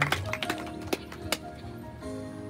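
Scattered hand claps from a small group of mourners, thinning out to a few by the end, over music with long held notes.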